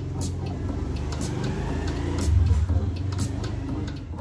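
Music with a heavy, sustained bass line and sparse percussion, swelling in loudness a little past the middle.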